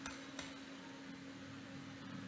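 Quiet room tone: faint hiss with a low steady hum, and a single soft click about half a second in.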